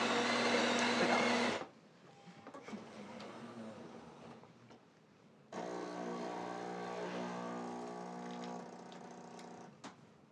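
Jura bean-to-cup coffee machine at work: its grinder runs loudly for about a second and a half, then, after a few seconds of quieter mechanical sounds, its pump hums steadily on one pitch for about four seconds as the coffee brews.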